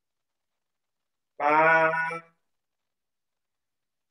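A man's voice holding one long, level-pitched syllable for just under a second, starting about a second and a half in, as a paced cue for a slow breath in a breathing exercise. It starts and stops abruptly, with dead silence on either side.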